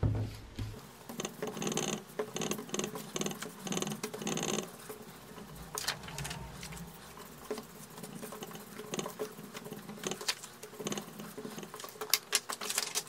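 Foam ink blending tool rubbed in short strokes along the edges of cardstock, a scratchy rustle about twice a second for the first few seconds, followed by scattered scrapes and light taps as the card is handled and re-inked.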